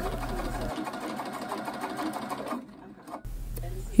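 Husqvarna Viking Designer 1 sewing machine running, stitching a fabric piping strip. It stops briefly about two and a half seconds in, then runs again.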